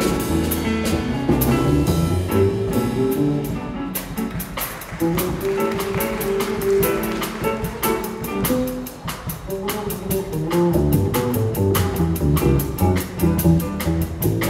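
Jazz piano trio playing: plucked upright double bass prominent in the low register, with a steady ride cymbal pattern on the drum kit and digital piano accompaniment.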